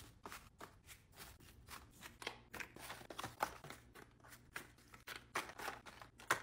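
Faint, irregular clicks and taps, several a second, of small cosmetic boxes, tubes and bottles being set one after another into a plastic basket with shredded-paper filler.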